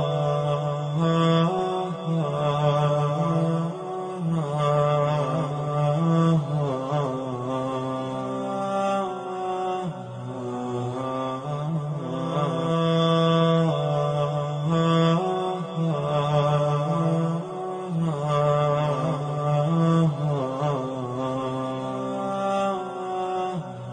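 A voice chanting a devotional recitation in long, held, wavering melodic notes that carry on without a break, sounding like a clean added soundtrack rather than sound from the spot.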